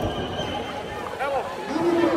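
Arena crowd voices: scattered shouts and calls from spectators, with a few short rising-and-falling cries a little over a second in.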